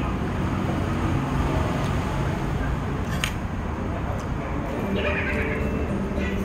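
Indistinct background voices and room hubbub in an eatery, with one sharp click about three seconds in.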